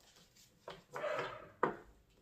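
Tarot cards being handled: cards sliding and rustling against the deck, then a sharper tap as a card is set down on the tabletop past the middle.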